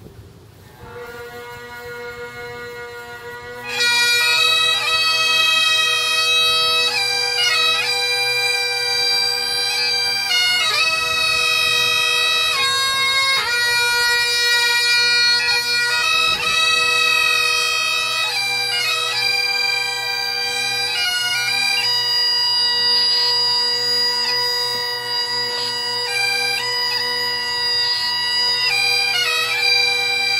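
Bagpipes playing. The drones sound first with a steady tone that swells, then about four seconds in the chanter joins with a melody over them.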